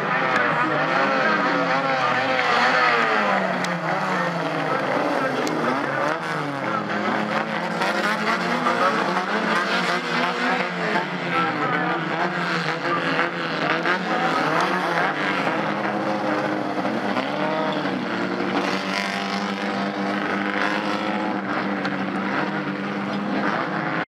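Engines of several Fiat race cars revving and passing, several at once, their pitch rising and falling as they go by.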